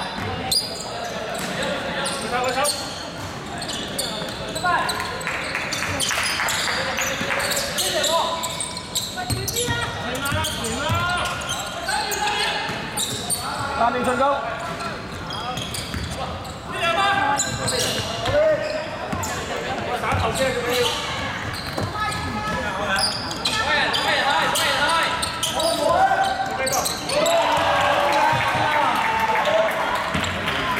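A basketball being bounced on a hardwood gym floor, with repeated sharp impacts, amid players' and spectators' voices, echoing in a large sports hall.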